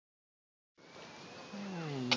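After a moment of silence, a steady background hiss; past halfway a person's voice makes one drawn-out wordless sound, falling in pitch.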